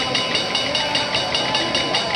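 Segment intro sound effect: a rapid, even mechanical ticking, about seven pulses a second, over steady high tones.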